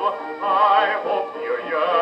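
A 1925 acoustically recorded 78 rpm dance-band record playing on a 1926 Victor Orthophonic Victrola Credenza with a medium tone needle. A melody line wavers with vibrato over the band, and the sound is thin, with no deep bass and no high treble.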